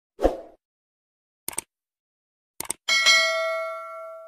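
Subscribe-button outro sound effects: a short low pop, two quick clicks, then a bell ding with several ringing tones that fades slowly.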